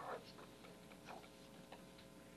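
Chalk on a blackboard, a few faint short taps and strokes as a formula is written, over a steady faint room hum.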